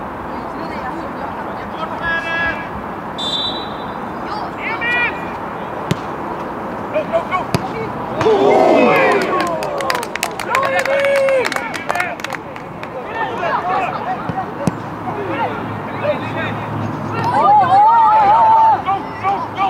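Scattered shouts from football players calling to each other on an open pitch, over a steady outdoor background hiss. A cluster of sharp knocks comes about eight to ten seconds in.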